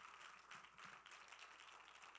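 Faint applause: a congregation clapping, many hand claps close together.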